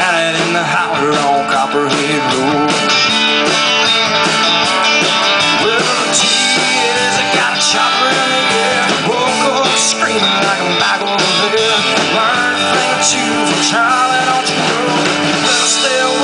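Live rock band playing loudly: guitar lines over bass guitar and drums, in an instrumental passage without vocals.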